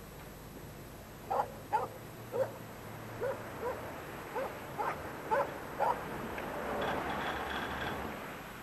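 A dog barking: a run of about a dozen short, sharp barks over some five seconds, then stopping.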